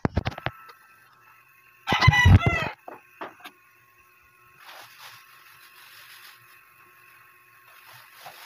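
Knocks as the phone is set down, then about two seconds in a loud, short rooster crow. Faint rustling follows.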